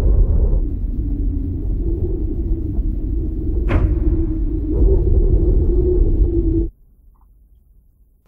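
Low rumbling drone from a TV drama's soundtrack, with one sharp hit a little under four seconds in; it cuts off suddenly about a second before the end.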